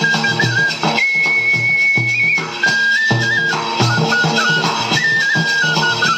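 Folk band music: a high flute plays a quick, warbling melody and holds one long high note about a second in, over steady beats of a bass drum and a smaller drum.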